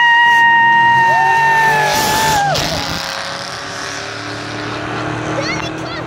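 A spectator's long, high-pitched shriek, held for about two and a half seconds, over the engines of two Ford Mustang SVT Cobras, one turbocharged, accelerating away down a drag strip. The engine sound grows quieter as the cars pull away.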